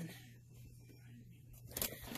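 Faint handling of a stuffed fabric pillow as it is brought to the sewing machine, with a few sharp rustles near the end, over a steady low hum.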